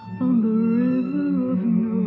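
Solo violin playing a slow melody low on the instrument, with held notes and vibrato; a new note comes in strongly just after the start.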